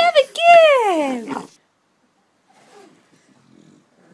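A dog's vocal call: a short pitched note, then a drawn-out whining howl that slides steadily down in pitch over about a second.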